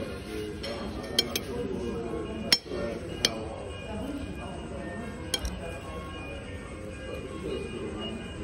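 A metal spoon clinking against a ceramic plate while scooping food: about five sharp clinks, a quick pair a little over a second in, the loudest at about two and a half seconds, and a last one past five seconds. The clinks sound over a continuous background of voices or music.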